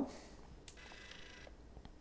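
Faint click of a Meike MK930 II speedlight's power switch being turned on, about a third of the way in, followed by a faint high whine lasting under a second as the flash powers up and charges.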